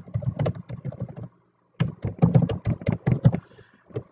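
Computer keyboard typing: a quick run of key clicks, a brief silence about a second in, then a second run of clicks that thins out near the end.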